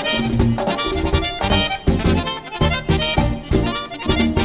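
Merengue típico band playing an instrumental passage led by a button accordion, over a steady, driving beat.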